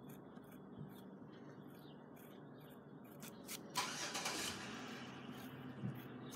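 Pen drawing on paper: faint short scratches, then a louder scratching rush of under a second about four seconds in, over a low steady hum.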